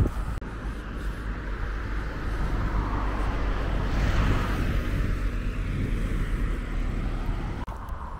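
Traffic on a nearby road, a passing car's noise swelling to a peak about four seconds in and fading, over a steady low rumble.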